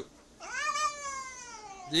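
Domestic cat giving one long meow that rises briefly and then slowly falls in pitch, lasting about a second and a half.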